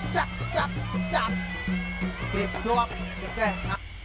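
Traditional ringside boxing music played live, with a drum, heard together with a commentator's voice.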